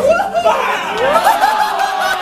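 Onlookers talking and laughing over each other, several voices at once.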